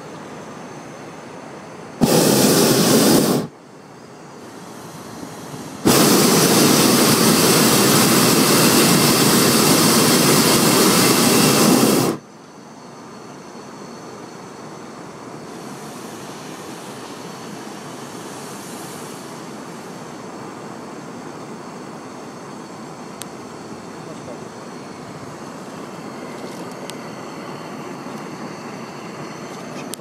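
Hot-air balloon propane burner firing twice: a short blast of about a second and a half, then a longer burn of about six seconds, each starting and stopping abruptly.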